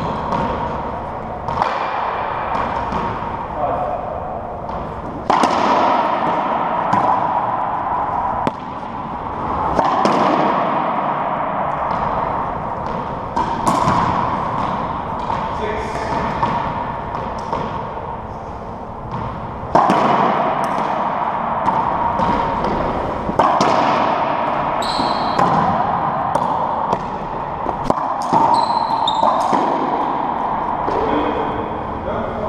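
Racquetball ball strikes and bounces, sharp cracks at irregular intervals, each ringing on in the enclosed hardwood court, with players' voices between them.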